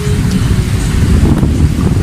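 Wind buffeting the camera's microphone, a loud, irregular low rumble, over the wash of small waves on a shallow beach.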